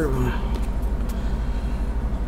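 A steady low hum with a faint hiss above it, and the tail of a man's spoken word at the very start.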